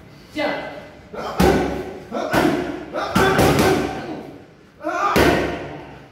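Boxing gloves smacking into focus mitts during pad work: single punches about a second and a half and two and a half seconds in, a quick flurry of three or four a little after three seconds, and one more near the end, the smacks echoing in a large gym hall.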